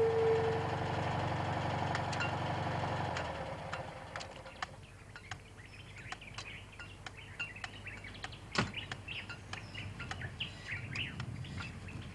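A pickup truck's engine running steadily as it pulls up, stopping about three and a half seconds in. After that, birds chirping over scattered clicks and knocks, with one louder knock past the middle.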